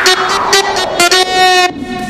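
Electronic dance music: a brassy, horn-like synth chord played in short chopped stabs, with almost no bass. A falling noise sweep fades out in the first half second.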